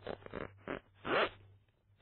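Zip of a leather laptop bag being pulled in a few short rasping strokes, the last and loudest about a second in.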